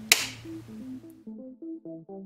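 A single sharp click of a power switch as the battery charger is switched on. Then background music of short plucked synth notes comes in.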